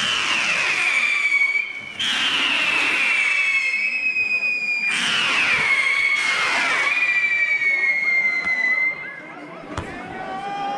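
Whistling firework rockets going up one after another, a new shrill whistle starting about every two to three seconds. Each whistle falls slowly in pitch, and the last one stops about nine seconds in.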